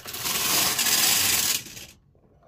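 Carriage of a Brother punch card knitting machine pushed in one sweep along the metal needle bed, a steady metallic rattle of the needle butts running through its cams as it selects needles from the punch card. It starts with a click and stops shortly before the end.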